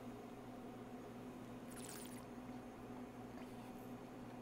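A short airy slurp about halfway through as wine is sipped from a glass, over a faint steady electrical hum.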